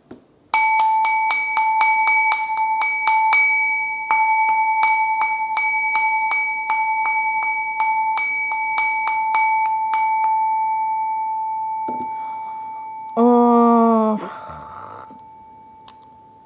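A handheld ritual bell shaken in quick strokes, first for about three seconds and again for several seconds after a short pause. Its single clear tone rings on and slowly fades. It is rung to call up the spirit of the dead.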